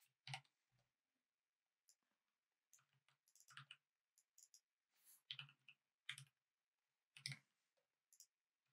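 Faint, scattered computer keyboard keystrokes: short separate clicks, each with a soft thud, coming irregularly in small clusters as code is typed.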